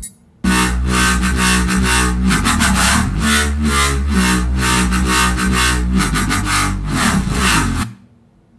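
Synth bass playing a repeating R&B bass line with a steady rhythm, starting about half a second in and stopping just before the end.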